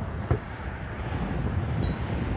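Low, steady rumbling of wind on the microphone, with a faint click about a third of a second in.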